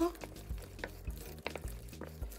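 Wooden spoon stirring a thick tomato and peanut-butter sauce in a stainless steel pot, quietly, with a few small clicks.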